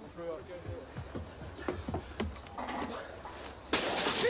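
Men shouting faintly outdoors, with scattered knocks and a low rumble. Near the end a loud, even hiss comes in suddenly.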